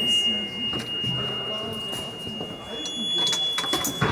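Crotales (antique cymbals) being played, a high pure ringing tone that sustains for most of the moment, joined near the end by a second, higher ringing note. Faint voices sit underneath.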